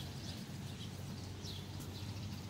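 A wild bird gives a short, high, downward-sweeping chirp about a second and a half in, over a steady low outdoor rumble.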